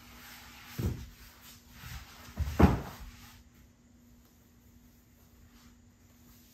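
Movement on a yoga mat as a yoga block is moved and set down: rustling with two dull thumps, the second and louder one about two and a half seconds in. After that, a faint steady hum.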